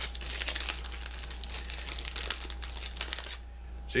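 Packaging crinkling and rustling as it is handled and opened by hand, a dense run of small crackles that stops about three seconds in.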